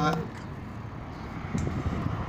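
Road noise from passing traffic, a low even rumble that grows louder and rougher about one and a half seconds in.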